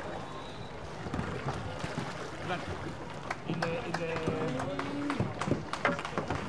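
Outdoor venue sound at the end of a canoe polo match: voices of players and spectators calling out at a distance, more of them and louder in the second half, with scattered sharp knocks over a steady background of water and crowd noise.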